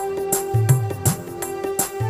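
Korg Kronos workstation keyboard playing an instrumental passage: held notes over a steady drum beat with low bass thumps.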